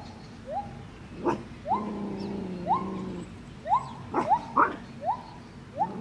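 Animal calls: a string of short, rising notes about once or twice a second, with a longer, lower call twice, and a few sharp clicks.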